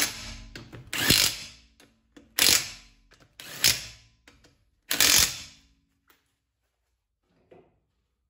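Cordless impact wrench running wheel bolts onto a steel wheel in five short bursts, about one every second and a quarter, snugging each bolt before final tightening with a torque wrench.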